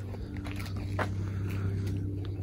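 A steady low hum with a few soft footsteps on a path.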